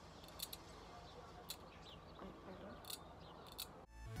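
Faint, sharp metallic clicks and scrapes of a steel dental hand scaler working against the teeth, scaling off tartar: about five irregular ticks over a low hiss.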